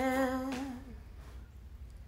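A solo voice, unaccompanied, holding one long sung note that ends about a second in, followed by a faint hush of room tone.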